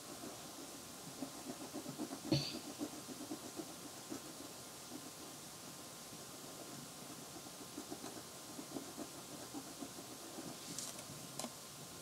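Faint scratching of a pen on paper in quick, short strokes as a small pupil is drawn and filled in, with one sharper knock about two seconds in.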